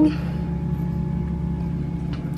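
A steady low hum of room noise, unchanging, with no distinct sound events.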